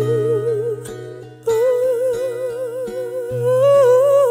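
A woman's voice holding long notes with a steady vibrato over sustained piano chords and a low bass note; the voice dies away about a second in and a new held note starts about a second and a half in.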